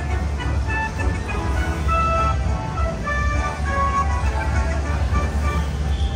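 Buffalo Gold slot machine playing its bonus music of short electronic chime notes stepping up and down in pitch while its win total counts up, over a steady low rumble of casino floor noise.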